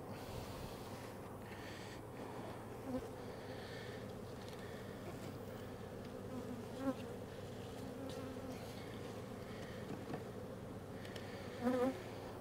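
Honeybees buzzing steadily, a crowd of confused bees milling at the hive entrance after their entrance was fitted with a pollen trap. The buzz rises briefly twice, as bees pass close.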